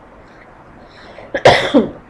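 A person's short cough about one and a half seconds in, loud and abrupt, ending in a brief voiced tail that falls in pitch.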